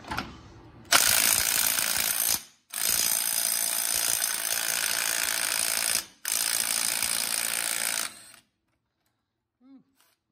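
Milwaukee cordless 3/8-inch-drive impact wrench hammering on the axle nut of a Polaris RZR wheel hub in three long bursts with short pauses between, working to break the tight nut loose.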